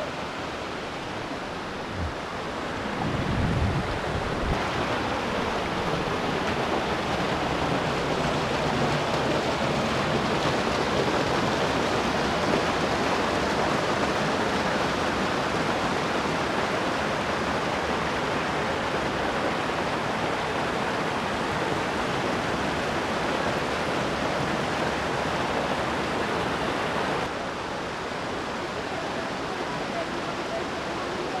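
Steady rush of a rocky mountain creek spilling over boulders and small cascades. There is a brief low rumble about three seconds in. The rush gets louder about four seconds in and eases a little near the end.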